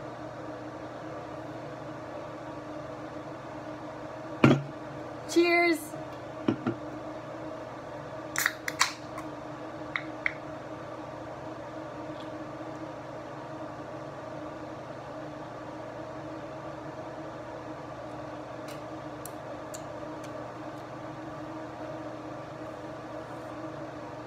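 A steady, even hum runs throughout. A sharp click comes about four and a half seconds in, a brief pitched sound just after it, and a few light clicks and taps between about eight and ten seconds.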